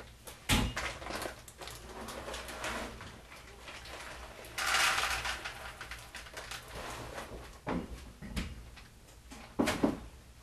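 Kitchen cabinet doors knocking open and shut and things being moved about inside, with a longer rustle about halfway through.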